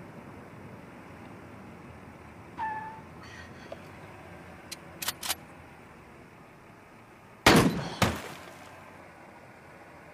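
Two heavy thuds about half a second apart, the second followed by a brief ringing tail, over a steady low hum; a few faint clicks come a couple of seconds before them.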